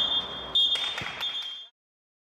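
A referee's whistle, blown in a short blast and then a longer one, over the echoing noise of an indoor sports hall, with a single knock about a second in; the sound cuts off suddenly near the end.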